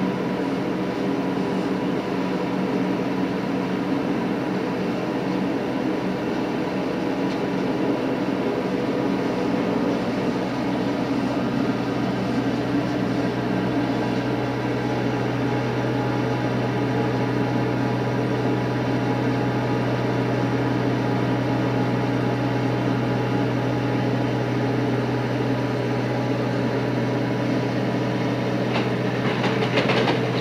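Tarrant leaf vacuum unit's engine and suction fan running steadily and loudly. A deeper steady hum comes in about 12 seconds in, and a few short clicks sound near the end.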